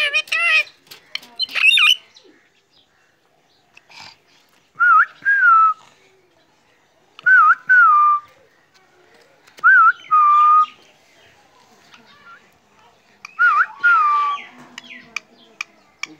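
Short whistled notes, each rising slightly and then sliding down in pitch, repeated in pairs every two to three seconds. Harsher, louder calls come in the first two seconds.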